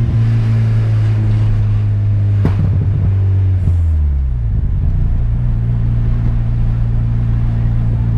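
Engine of a tuned turbocharged VW Golf (about 300 hp) heard from inside its cabin, running with a steady low drone; a little after halfway the note falls in pitch and settles lower. A short knock sounds about two and a half seconds in.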